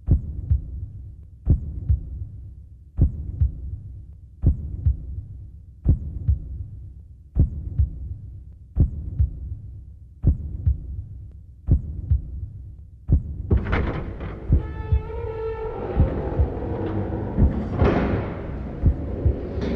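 A slow, deep double thump, like a heartbeat, repeating about every second and a half. About thirteen and a half seconds in, a louder, brighter wash of sound with a held chord joins the thumping.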